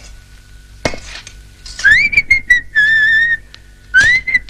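A person whistling a tune: after a sharp click about a second in, a rising note, a few short notes, then a long, slightly wavering held note.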